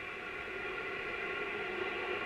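Ariane 5's Vulcain liquid-fuelled main engine igniting on the launch pad: a steady rushing noise that slowly grows louder, heard through a TV speaker.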